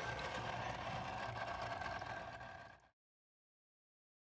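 Small aquarium filter running at a pond: a steady low hum with water noise. It fades out shortly before three seconds in, and then there is silence.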